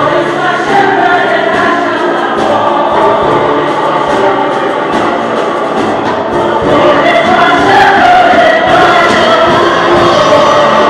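Choir singing together, growing louder about seven seconds in.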